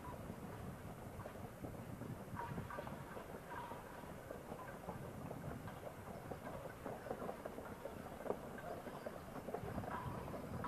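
A team of harnessed horses walking toward the listener on a gravel road, hooves clip-clopping while the cart they pull rumbles along behind. The hoofbeats grow clearer in the last few seconds as the team comes closer.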